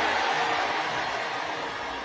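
A large congregation cheering and shouting in response, heard as a steady wash of crowd noise that slowly fades.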